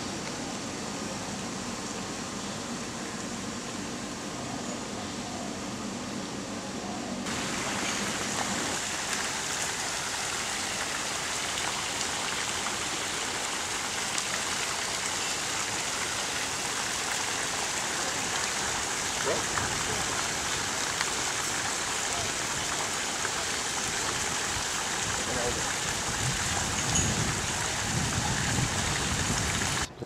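Tiered stone garden fountain running into a pond: a steady, even rush of falling water that starts about seven seconds in, after a low steady hum.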